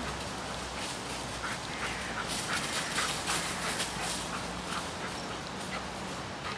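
A dog moving about close by: a run of short, quick noises, densest between about two and four seconds in.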